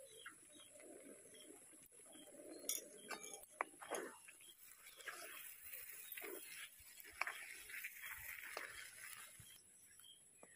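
Faint scraping and clinking of a metal spatula stirring thick halwa in an aluminium wok, with a few sharper clinks against the pan. The scraping is busier in the second half.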